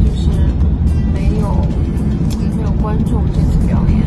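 Steady low road and engine rumble inside the cabin of a moving van, under a woman's talking.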